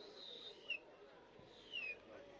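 A bird calling: a few short, high whistles, each falling in pitch, about three in two seconds, faint over distant murmur.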